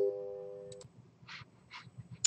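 Electronic announcement chime over a public-address speaker, its last two held low notes ringing on and fading out about a second in.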